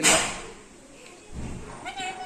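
Black-capped lory calling: a short harsh squawk that fades quickly, a soft thump midway, then a drawn-out squeaky call beginning near the end.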